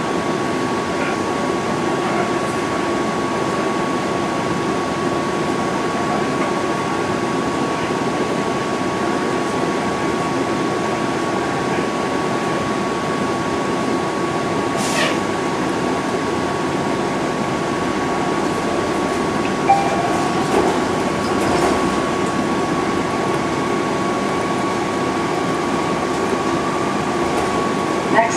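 Cabin noise inside a moving TTC transit vehicle: the steady drone of the running vehicle with a constant high whine. A single sharp click comes about halfway through.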